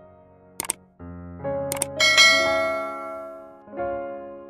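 Sound effects of an on-screen subscribe-button animation over soft piano background music: a quick double mouse click just over half a second in, another double click about a second later, then a bright bell chime that rings on and fades slowly.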